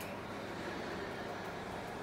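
Steady, even background hiss with no distinct events: the room tone of a phone recording.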